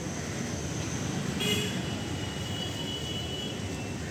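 Steady low rumble of city road traffic, with a faint high tone from about one and a half seconds in that fades out a little before three seconds.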